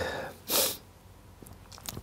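A man's single short, sharp intake of breath about half a second in.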